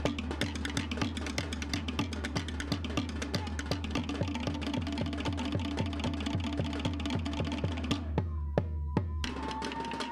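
Tahitian ʻōteʻa drum ensemble playing fast: a rapid clatter of wooden slit log drums (toʻere) over a steady deep drum beat. Near the end the drumming thins out and a high held tone sounds.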